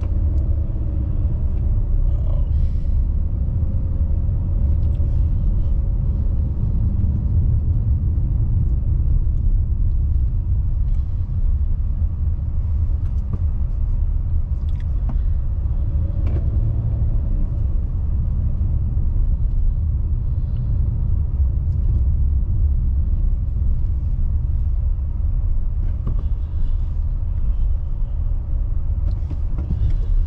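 Steady low rumble of road noise inside a car cabin as the car drives over an unpaved dirt road, with a few faint brief knocks from the bumps.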